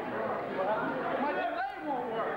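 Many voices talking over one another: crowd chatter in a hall, with no music playing.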